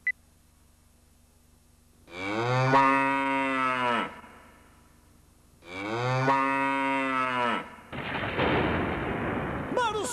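A short countdown beep, then two long cattle moos of about two seconds each with a pause between them, then a steady rushing hiss near the end.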